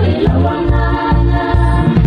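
Samoan gospel song: sung vocals over a backing band with a steady, heavy bass beat.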